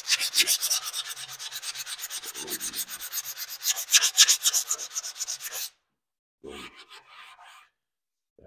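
120-grit sandpaper on a soft interface pad rubbed by hand over a textured cabinet coating, rapid rhythmic scrubbing strokes that scuff the first coat before recoating. The strokes stop about five and a half seconds in, followed by a short, fainter rub.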